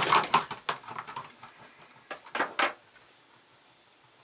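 Plastic food-dehydrator tray being handled and set down on the counter: a cluster of clattering knocks in the first second, then a few lighter knocks about two seconds in.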